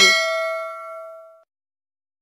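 Bell-notification sound effect of a subscribe-button animation: one bright ding that rings and fades away within about a second and a half.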